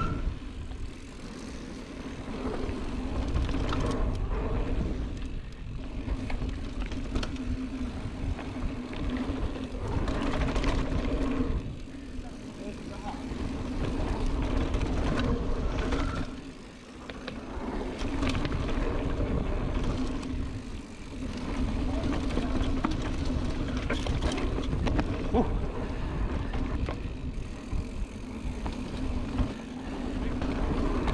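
Mountain bike riding down dirt forest singletrack: tyres rolling over dirt and roots, with wind and rumble on the handlebar-mounted camera's microphone. A steady hum runs through most of it, easing off briefly a few times.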